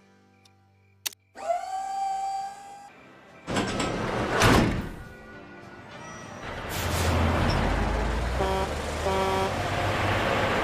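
Animated-film soundtrack: a sharp click, then a held tone that slides up at its start, and a rushing whoosh that swells and falls away about halfway through. From about six and a half seconds in, a semi truck's engine rumbles in low and keeps going, with two short tones over it near the end.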